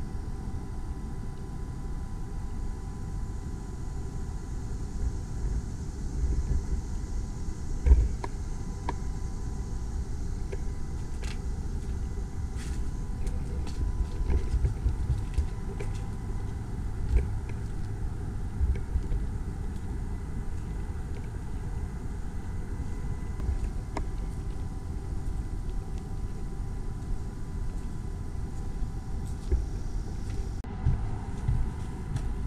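Low, steady rumble of handling and movement noise from a camera carried on foot, with scattered knocks and one louder thump about eight seconds in. A faint steady high tone runs underneath.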